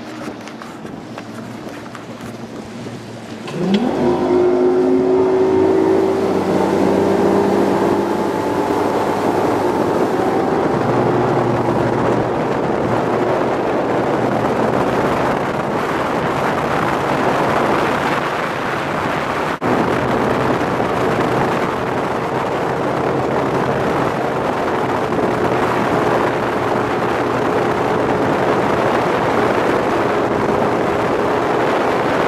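Bass boat's outboard motor throttled up about three and a half seconds in, rising in pitch as the boat accelerates, then running steadily at speed with wind and water noise rushing past.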